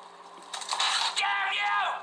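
A man's high, strained shout with no clear words: a breathy rush of sound about half a second in, then a pitched yell that falls away and stops just before the end.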